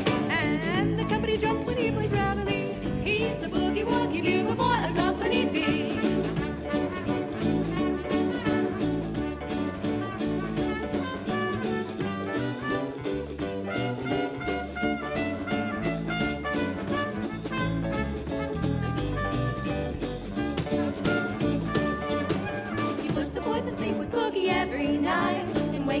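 Swing big band playing an instrumental break, a trumpet taking a solo over a steady beat; the singers come back in at the very end.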